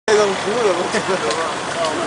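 Engine of a Nissan Patrol 4x4 running as it pulls through deep mud, with people's voices over it.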